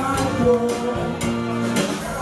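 Live soul band playing: guitar to the fore over drums, keyboard and hand percussion, with a steady beat.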